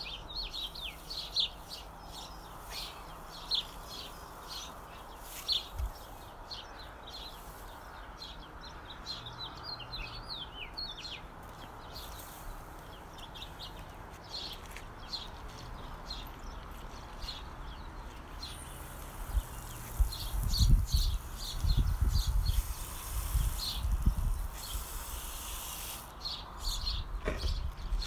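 Small birds chirping repeatedly in quick short notes through the first half. About two-thirds of the way in, a steady hiss of water spraying from a garden hose nozzle begins, joined by loud low rumbles and bumps of handling on the microphone.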